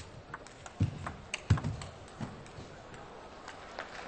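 Table tennis ball struck back and forth in a rally: sharp clicks of the celluloid ball off the rubber paddles and the table, some with a low thud, irregularly spaced. The clicks stop after about two and a half seconds as the point ends.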